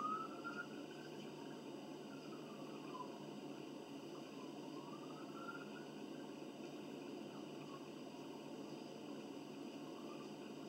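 Steady quiet room noise, with a few faint drawn-out tones sliding up and down in the first half.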